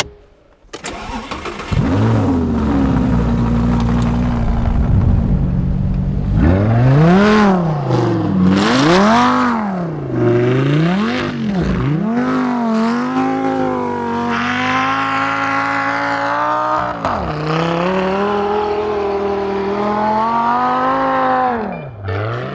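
Rebellion R2K supercar's engine started and idling, then blipped in several quick revs, then held at high revs under sustained acceleration, with one brief lift before it pulls again.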